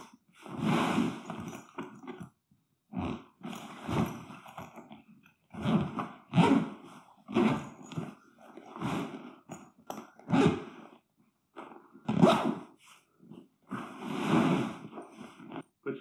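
Zipper of a swag carry bag being pulled closed along the packed bag, with the bag fabric rustling as it is handled: a string of short rasping, rustling bursts, about one a second, with brief pauses between.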